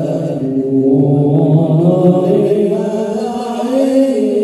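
A group of men chanting sholawat, Islamic devotional praise songs, together into microphones, on long held notes that bend slowly in pitch.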